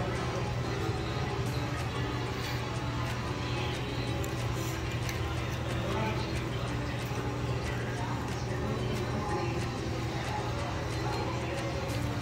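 Background music playing over restaurant room noise, with soft mouth sounds of someone chewing a fried chicken sandwich.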